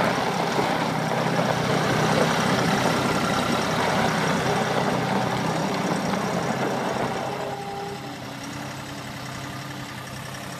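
Gehl 4640 skid steer loader's diesel engine running steadily as the machine drives and turns. About three-quarters of the way through, the engine sound drops to a quieter, lower running.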